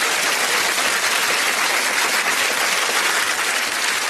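Large studio audience applauding: steady, dense clapping.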